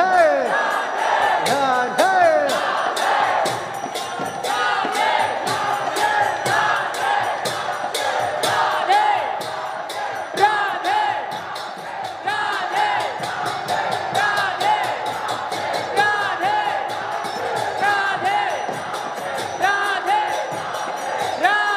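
Devotional kirtan in full swing: a large crowd of voices singing and calling out together over a steady, fast clashing of hand cymbals (karatalas).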